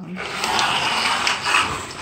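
A window curtain being pulled shut: a continuous scraping slide lasting almost two seconds.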